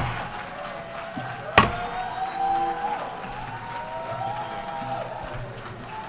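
A gavel strikes once on the desk about one and a half seconds in, over the noise of a large assembly-hall crowd with several drawn-out voices calling out.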